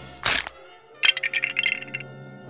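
Sound effects: one sharp crack, then about a second of rapid crackling, clinking clicks with a metallic ring. A low held note of background music runs underneath.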